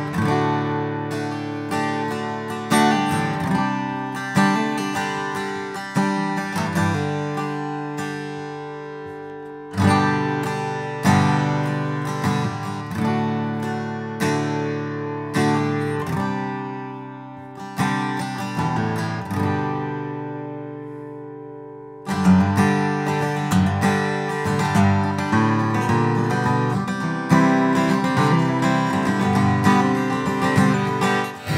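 Taylor 814ce grand auditorium acoustic guitar (Sitka spruce top, East Indian rosewood back and sides) heard acoustically through a studio microphone. Chords are strummed and left to ring out, each fading before the next. About two-thirds of the way through the playing becomes denser and more rhythmic.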